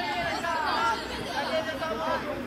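Several people's voices calling and chattering at once, fairly high-pitched, over a low steady outdoor background noise.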